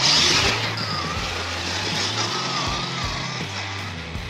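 Radio-controlled scale crawler truck driving through mud right past the microphone: a loud burst of electric motor and tyre noise in the first half second, then lower as it climbs away. Background music plays throughout.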